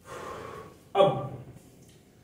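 A man's audible gasp-like intake of breath, then about a second in a short, sudden voiced sound from him that falls away quickly.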